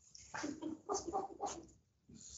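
Soft laughter: a run of short, quick bursts lasting about a second and a half, quieter than the talk around it.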